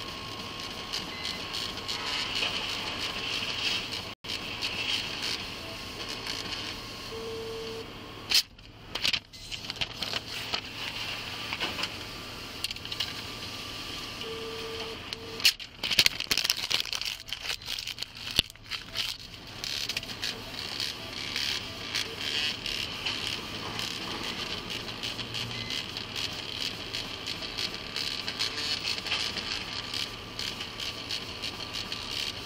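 Steady background hiss inside a vehicle cabin, with rustling and a few sharp knocks from the body-worn camera being moved, mostly about a third and halfway through. Two short beeps sound along the way.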